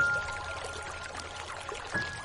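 Slow, calm solo piano: a high note struck at the start rings on and fades, and a softer note sounds near the end, over a steady hiss of rain.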